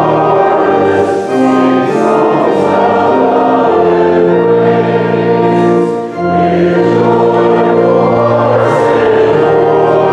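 A church congregation singing a hymn together with organ accompaniment, in held notes that change every second or so.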